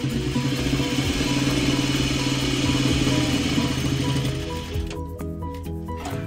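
Electric sewing machine running steadily as it stitches a seam through fabric, stopping about five seconds in. Background music plays throughout.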